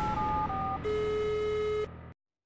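Electronic telephone-style jingle of a TV phone-in programme's title ident: a quick run of short beeps stepping between pitches, then one long, lower buzzing tone held for about a second before it cuts off.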